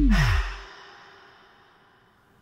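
The end of a descending tape-stop sound effect, its falling pitch and deep rumble cutting off about half a second in, under a short breathy sigh; the sound then fades away.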